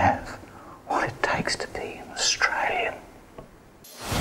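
A man's voice whispering a few short phrases.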